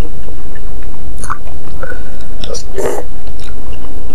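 Close-miked chewing of a mouthful of soft meatball and noodles: wet smacks and small clicks, the loudest a squelchy burst about three seconds in, over a steady low rumble.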